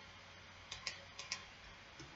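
Computer mouse and keyboard clicks: four short, sharp clicks in two quick pairs, over a faint steady hum.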